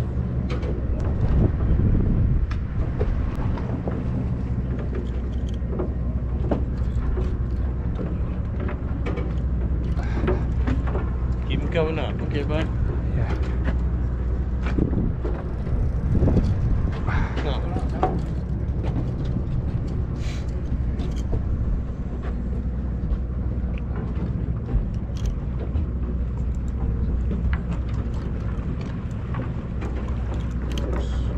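Steady low hum of the sportfishing boat's engine running, with other people's voices heard now and then over it.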